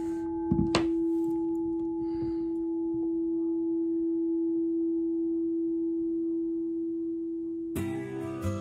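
Crystal singing bowl ringing one steady, unwavering low tone with fainter overtones, after being struck just before. There are a couple of light knocks about half a second in. The tone cuts off suddenly near the end as acoustic guitar music begins.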